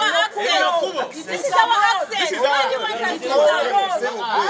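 Several people talking at once, their voices overlapping in an animated exchange.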